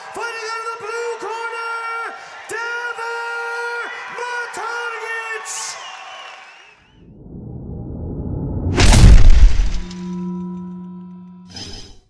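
Music with a pitched melody line for the first six seconds or so. Then a rising whoosh builds into a loud crash with a deep boom about nine seconds in, followed by a fading held tone and a short hit at the very end: an outro sound-effect sting.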